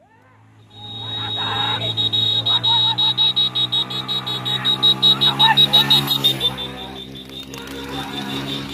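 Motorcycle engine running steadily with a shrill, rapidly pulsing high-pitched tone over it from about a second in until past six seconds, and people shouting.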